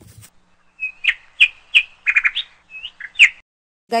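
A wild bird calling: a run of short, clear chirps, with a quick stuttering trill about halfway through.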